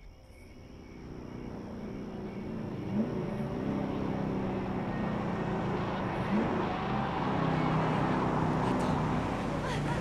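A car engine running, fading in and growing louder over the first three seconds, then holding steady.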